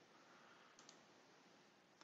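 Near silence: faint room hiss with a couple of faint clicks about a second in.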